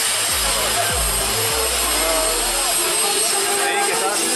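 Twin jet engines of a jet-powered truck running, a steady high-pitched roar and whine, with a deep low rumble through the first second and a half. Crowd voices underneath.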